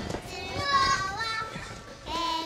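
Young children squealing and shouting in excited play, with a single thump right at the start.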